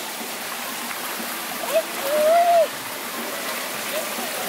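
Steady rush of a small stream running down a rocky channel. About halfway through comes one short, drawn-out vocal sound from a person.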